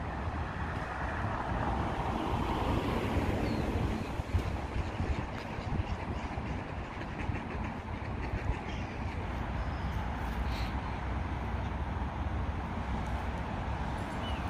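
Steady outdoor rumble of background noise, swelling over the first few seconds and then easing, with a few light clicks after about four seconds.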